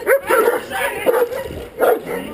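Guard dog barking in a quick series of short barks at a decoy during protection work.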